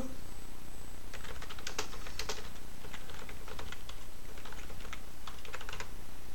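Computer keyboard being typed on: a run of quick, uneven keystrokes starting about a second in and stopping near the end, typing out a short terminal command.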